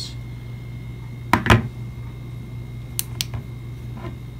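Two knocks of a plastic power bank on a wooden desk about a second and a half in, then two quick clicks of its side button about three seconds in: a double press that switches its built-in flashlight on. A steady low hum runs underneath.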